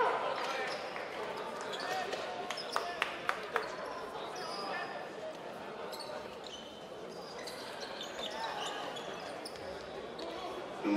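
Live basketball game sound in a large, echoing gymnasium: a basketball bouncing on the hardwood court, four sharp knocks about three seconds in, with short high sneaker squeaks and faint players' shouts throughout.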